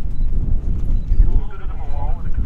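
Wind buffeting the microphone in a steady low rumble, with a person's voice talking in the background from about one and a half seconds in.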